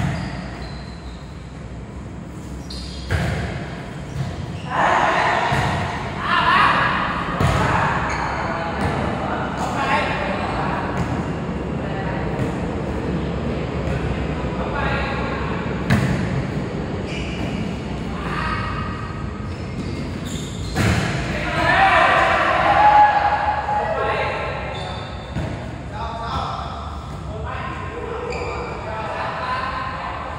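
Volleyball being struck and bouncing in a reverberant indoor hall, sharp hits spaced a few seconds apart through the rally, with players' shouts and calls, loudest about five to eight seconds in and again a little past twenty seconds.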